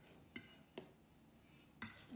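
Three faint clinks of a metal fork against the slow cooker's pot and a metal pan while lifting meat out, the last near the end the loudest.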